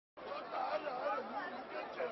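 Several voices talking over one another: crowd chatter, starting abruptly just after the beginning.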